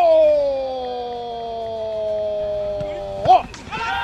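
A football commentator's goal cry: one long held 'ohhh', slowly sinking in pitch for about three seconds, then a short 'oh' near the end.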